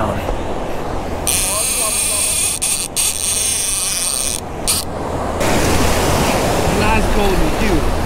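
Surf washing over the beach and wind buffeting the microphone, with a high, steady whir for about three seconds near the start as line is wound onto the conventional fishing reel while a bull redfish is brought into the wash.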